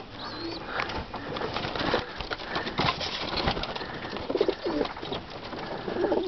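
Young racing homing pigeons pecking feed out of a hand: a busy, irregular patter of beak clicks on the grain. A few short coos come in about four and a half seconds in.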